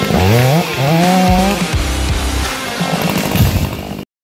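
Chainsaw revving up twice and then running under load as it cuts through the base of a dead tree, with rock music over it. A brief loud hit comes near the end, and the sound cuts off suddenly.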